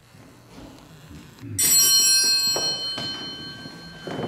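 A small altar bell rung once about a second and a half in, its bright high ringing fading away over the next two seconds.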